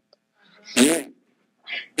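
A person's voice: one short, sharp vocal outburst about a second in, a faint breath later, and the start of another vocal sound at the very end.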